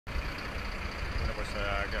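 Low, steady rumble of an idling vehicle engine, with a man's voice starting near the end.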